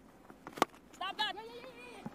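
A cricket bat strikes the ball once, a sharp crack about half a second in. Short high-pitched voice calls follow a moment later.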